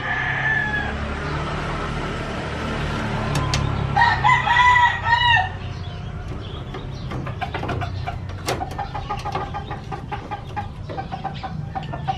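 A rooster crowing once, about four seconds in, the loudest sound here. From about seven seconds on come scattered light clicks and taps of metal parts being handled on a steel computer case frame.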